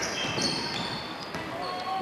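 Basketball being dribbled on a hardwood gym court, with short high squeaks from sneakers over a murmur of spectators.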